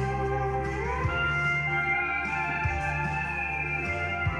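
Instrumental passage of a country song with no vocals: sustained guitar notes over a steady bass line, with a guitar note sliding upward about a second in.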